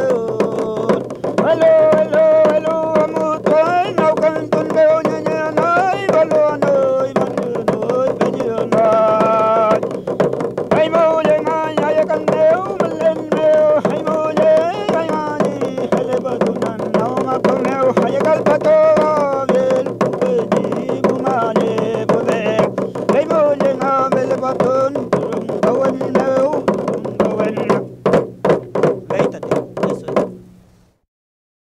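Mapuche ül kantun: a solo voice singing a bending melody over steady strokes of a kultrung, the Mapuche ceremonial frame drum. Near the end the singing stops and the kultrung plays alone for a few strokes, about four a second.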